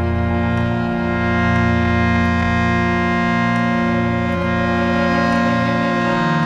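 Devotional kirtan music: a harmonium holds sustained chords over a low drone, moving to a new chord right at the end.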